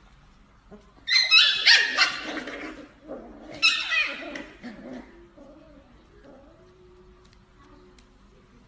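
Corgi puppies yelping and squealing while play-fighting, in two loud bouts: the first about a second in, the second about three and a half seconds in.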